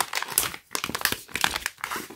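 Plastic packaging bags crinkling as hands press on and lift them, a dense run of irregular crackles.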